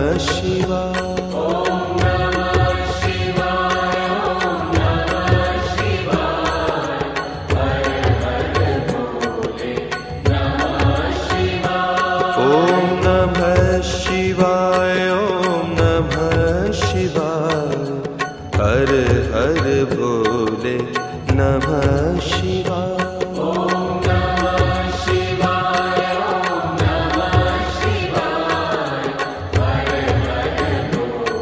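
Devotional music: a sung Hindu mantra chant over a steady drum beat.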